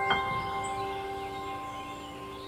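Soft solo piano: a high note is struck just after the start and rings over held notes that slowly fade away.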